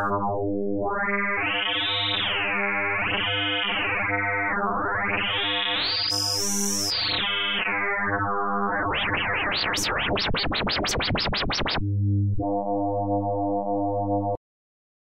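Software synthesizer tone from two slightly detuned sine oscillators at 100 and 101 Hz run through Chebyshev polynomial waveshaping, giving a buzzy tone near 100 Hz. As the mouse moves, its brightness sweeps up and down in slow arches, then wobbles rapidly for a few seconds, then settles to a duller steady buzz near the end.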